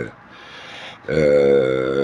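A man's voice: a breath drawn in, then about a second in a long, steady hesitation sound ('eee') held on one pitch.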